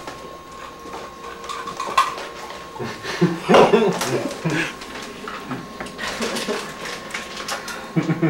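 Kitchen clatter of dishes and cutlery: scattered clinks and knocks, busiest about three and a half seconds in and again near the end, with a person's voice breaking in briefly about three and a half seconds in.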